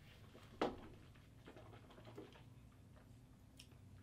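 A quiet room with one short, sharp sip-like sound about half a second in, then a few faint ticks as tasting glasses of bourbon are lowered and set on a wooden table.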